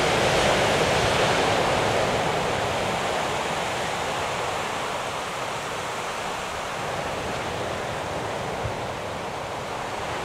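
Sea surf washing onto the beach below, a steady hiss of breaking waves that eases a little after the first couple of seconds.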